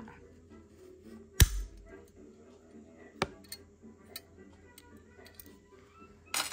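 Small silver jewellery pieces handled in the hands: a sharp metallic snap about one and a half seconds in, another click about three seconds in, then a few lighter ticks.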